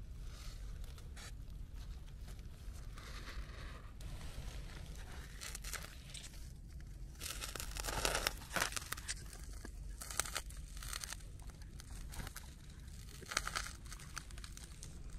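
A hand rustling and crackling through dry leaves, twigs and needles while picking velvet shank mushrooms from under a mossy log. It comes in irregular bursts, loudest about eight seconds in and briefly again near the end.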